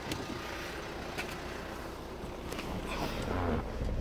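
Hyundai Santa Fe's engine idling with a steady low hum, heard from inside the cabin, with a few light clicks over it.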